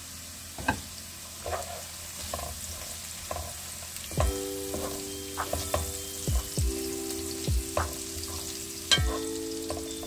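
Food sizzling in a frying pan, with light clicks and scrapes of a utensil as it is stirred. About four seconds in, background music with sustained chords and a low beat comes in over it.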